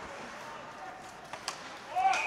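Faint ice hockey rink sound: skates and sticks working on the ice during play, with a couple of sharp clicks about a second and a half in.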